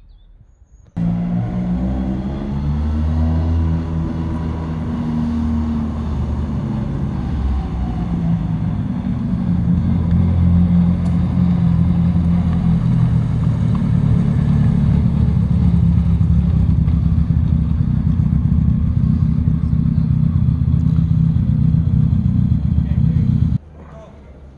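Fiat 124 Spider rally car's twin-cam four-cylinder engine. It comes in abruptly about a second in, revs up and down, then runs steadily as the car moves off slowly. It cuts off near the end.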